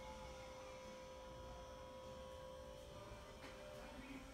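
Near silence: room tone with a faint steady tone held throughout.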